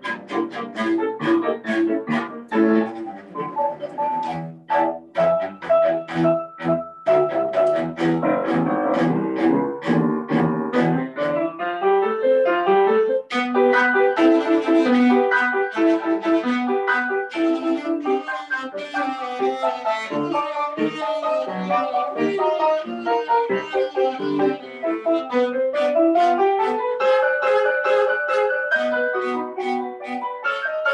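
Cello played with the bow in a fast passage of short, separate notes, with a rising run of notes near the end.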